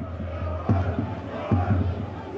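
Stadium crowd noise from football fans in the stands, a steady mass of voices with a few low thuds.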